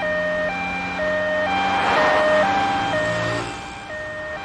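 Two-tone hi-lo emergency vehicle siren, switching between a lower and a higher note about every half second, fading near the end.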